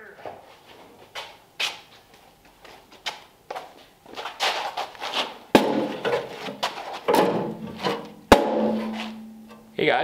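A rusty sheet-steel car firewall panel being handled, with irregular knocks and metallic clanks and two sharp bangs about halfway through and near the end. Music plays in the middle of the stretch.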